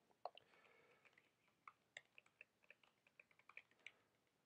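Faint, irregular computer keyboard taps and clicks, scattered one at a time over a few seconds, as a misspelled word is corrected in a code editor.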